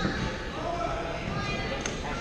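Echoing sports-hall ambience of a badminton session: scattered background voices, with one sharp racket-on-shuttlecock hit near the end.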